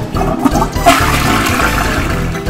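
A doll's toy toilet being flushed: a flushing-toilet sound, gurgling water at first, then a loud rushing swoosh from about a second in.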